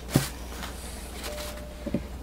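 Two light knocks, one just after the start and a smaller one near the end, as a freshly cut bar of soap is handled against a clear plastic soap-cutting box.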